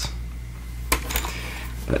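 Plastic Lego bricks clicking and knocking as a brick-built model is turned over in the hands: one sharp click about a second in, then a few lighter clicks.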